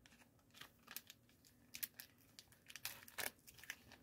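Faint, scattered crinkles and small tearing sounds of a plastic candy wrapper being handled and opened, a Reese's peanut butter cup package.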